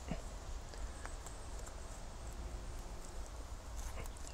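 Quiet outdoor background with a steady low rumble and a couple of faint soft knocks and ticks, the first at the very start and a small tick about a second in.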